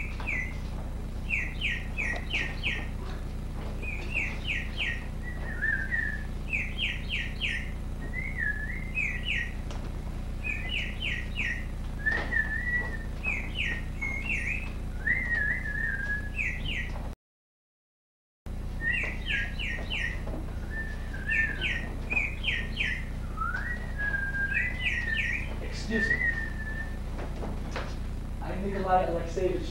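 A caged songbird chirping: repeated runs of three to five quick bright chirps alternating with short warbling slides, over a steady low hum. The sound cuts out completely for about a second two-thirds of the way through.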